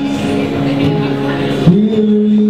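A man singing a long held note over a strummed Gibson acoustic guitar, his voice sliding up in pitch near the end.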